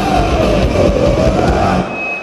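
Oi!/punk rock band playing loudly live, with heavy drums and bass. The song stops abruptly near the end, leaving crowd noise.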